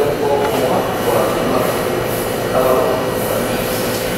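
New York City subway train running in the station, a steady whine over continuous noise, with people's voices mixed in.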